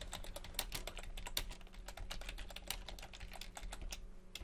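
Typing on a computer keyboard: a quick, steady run of key clicks over a faint low hum.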